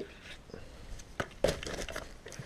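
A few faint clicks and knocks over a low background, several in quick succession about a second and a half in, from the camera being handled and carried.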